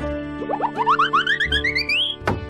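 Cartoon sound effect over background music: a quick run of short rising notes, several a second, that climb steadily higher in pitch, starting about half a second in.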